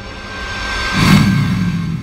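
Logo-intro sound effect: a rising whoosh over sustained synth tones that swells to a peak with a low boom about a second in, then slowly fades.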